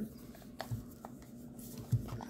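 Hands handling a 1950s PaX M2 rangefinder camera, fitting its metal bottom plate back onto the body, with light rubbing and a couple of faint metallic clicks.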